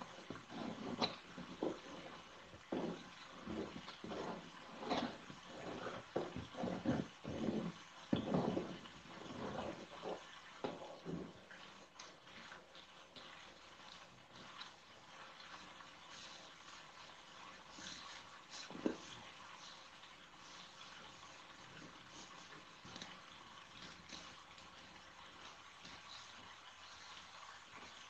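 Cardboard panels being handled and pressed together by hand. Irregular rustling and scraping fills the first ten seconds or so, then it goes quieter with a few light taps and one sharper knock a little before the twentieth second.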